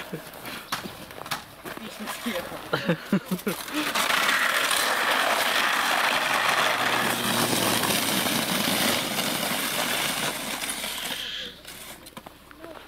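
A round plastic sled sliding down an icy snow slide: a steady scraping hiss that lasts about seven seconds and stops sharply near the end. Before it come short crunching knocks of steps in snow and brief voice sounds.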